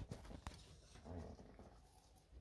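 Near silence with faint handling noise: a single soft click about half a second in and a low, soft rustle a little after one second.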